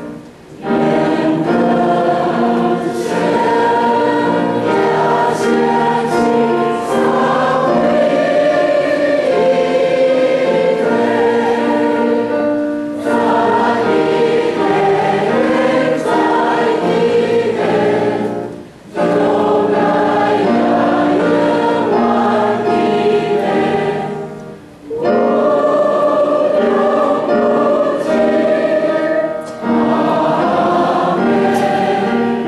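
Church choir singing a sacred anthem in long sustained phrases, with brief breaks between phrases a few times.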